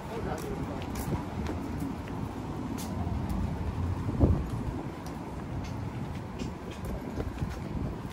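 City street noise while walking: a steady low rumble of traffic, with faint ticks like footsteps on the pavement and a brief murmur of a voice about four seconds in.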